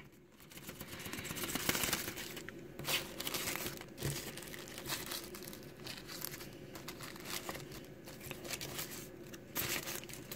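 Paper instruction sheet and thin plastic-and-paper packaging wrap crinkling and rustling as they are unfolded and handled, in fits and starts.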